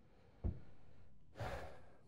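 A man's breath into a pulpit microphone, a faint intake shortly before the second, preceded by a soft low thump about half a second in.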